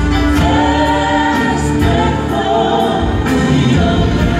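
Live gospel worship music: a group of singers in harmony over a band with a steady low bass and light drums.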